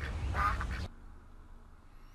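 The Aflac duck's voiced "AFLAC!" quack from a TV commercial, once, about half a second long. The commercial's sound cuts off suddenly just before a second in, leaving faint room tone.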